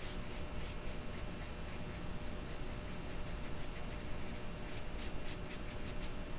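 Paintbrush strokes of acrylic paint on Bristol paper: soft, scratchy brushing swishes, with a quicker run of strokes near the end.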